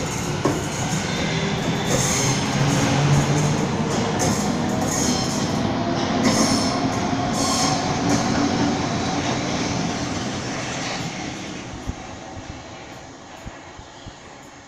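Southeastern Class 395 'Javelin' high-speed electric multiple unit pulling out and passing close by, with the rumble and clatter of its wheels on the rails and a whine that rises in pitch as it gathers speed. The sound fades steadily over the last few seconds as the train draws away.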